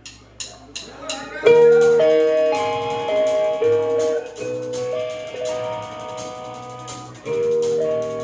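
Four sharp drumstick clicks counting in, then a rock band of electric guitars, bass guitar and drum kit comes in loud together about a second and a half in, playing a riff with a brief break and re-entry near the end.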